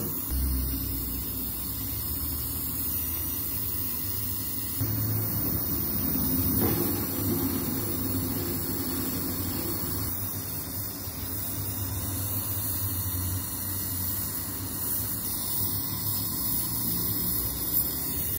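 Oxy-fuel brazing torch flame burning steadily on an aluminium refrigerator evaporator tube, a continuous rushing sound while a puncture is brazed. It grows a little louder about five seconds in.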